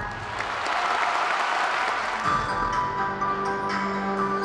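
Audience applauding as an act ends, then, about two seconds in, the show's music comes in with held notes and light struck notes.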